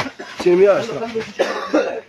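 People talking, with a cough among the voices.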